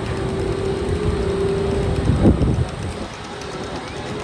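Disney Skyliner gondola cabins moving through the station on its drive machinery: a steady mechanical rumble with a held tone for the first two seconds, and a louder rumbling swell a little past halfway as a cabin passes.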